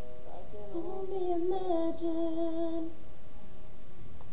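A girl's voice sings one long held note with a slight wobble. It ends about three seconds in, just after the last piano chords die away.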